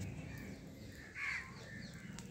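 A crow cawing once, about a second in, against faint outdoor background noise.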